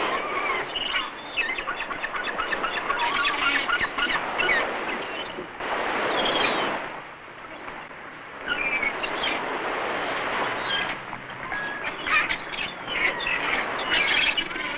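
Birds calling, many short chirps, over a steady rushing noise that swells briefly about six seconds in and drops away for a second or so after.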